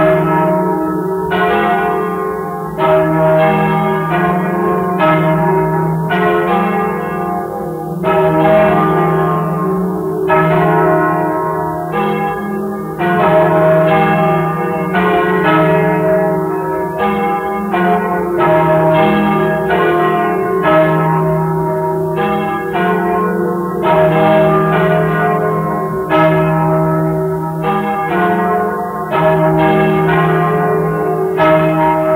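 Festive peal of three church bells (1155 kg, 858 kg and 539 kg) ringing together, played from a restored 1943 78 rpm record. Overlapping strikes come about one to two a second in an uneven rhythm, each ringing on over a steady hum of the bells' low tones.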